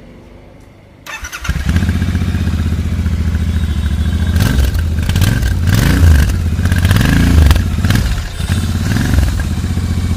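Royal Enfield Interceptor 650's parallel-twin engine cranked on the electric starter about a second in, catching at once and settling into a steady idle. It is then revved in several throttle blips that rise and fall in pitch.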